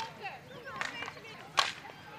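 Field hockey sticks striking the ball: two sharp cracks, a lighter one a little under a second in and a loud one about a second and a half in.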